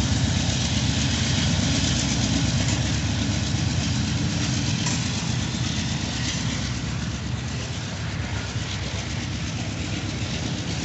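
A long freight train's boxcars rolling past on the rails, a steady rumble that slowly fades, with the diesel locomotives at its head pulling hard as they draw away.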